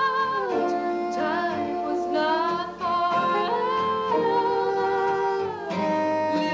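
Live acoustic music: a woman singing long, wavering held notes that glide from one pitch to the next, accompanied by acoustic guitar and piano.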